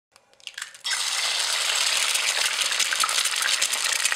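Sizzling as of food frying in hot oil: a dense, steady crackle that starts suddenly about a second in.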